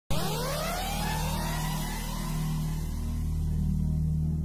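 Synthesized intro sound design: a sudden whooshing swell with tones gliding upward and levelling off as the hiss fades over a few seconds, over a steady low drone that leads into ambient music.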